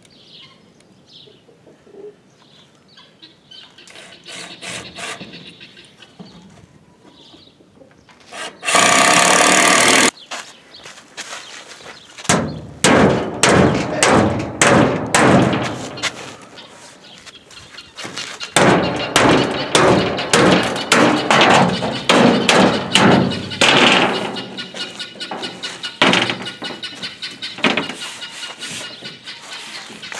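A cordless drill runs for about a second and a half, driving a screw into a two-by-four. After that come long stretches of rapid metallic clattering, rattling and scraping as sheets of old corrugated tin roofing are moved and slid into place on the frame.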